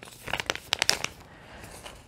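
Product packaging crinkling as it is handled, with a cluster of sharp crackles in the first second, then softer rustling.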